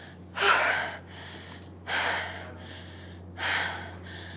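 A woman breathing hard after a set of burpees: three heavy, gasping breaths about a second and a half apart as she catches her breath.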